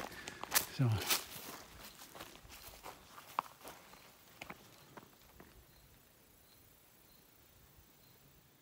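Footsteps on a dry, leaf-covered forest trail, irregular steps that thin out and fade after about five seconds, leaving only faint outdoor quiet.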